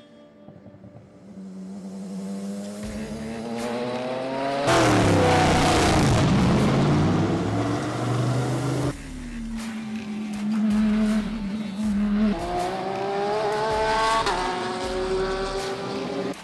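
Racing cars' engines at full throttle: Porsche 911 GT3 flat-sixes accelerating out of a corner, the note rising through the gears, loudest as a car passes close about five seconds in. Then a race car, an LMP3 prototype in the pit lane, runs at a steady low note before accelerating again, the pitch rising with a gear change near the end.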